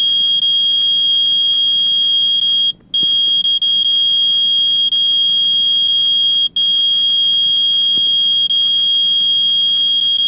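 Radex radiation meter's alarm sounding, a loud, steady high-pitched tone with two brief breaks. It is set off by the high dose rate from the uranium-ore ceramic jar, about 1.24 microsieverts per hour against a background of 0.23.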